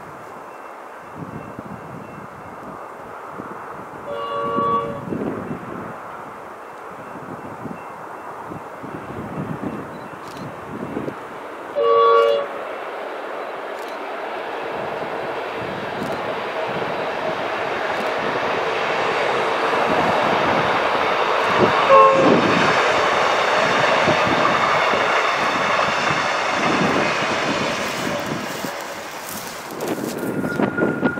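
V/Line P class diesel locomotive sounding its horn twice, a short blast about four seconds in and a louder, sharper one about twelve seconds in. The train's engine and wheel noise then grows louder as it approaches, peaks about two-thirds of the way through, and fades as it passes.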